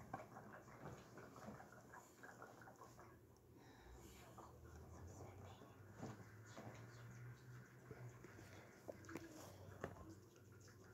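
Faint handling noise: soft scattered clicks and rustles of hands and a plastic cup lid close to the microphone, over a low steady hum.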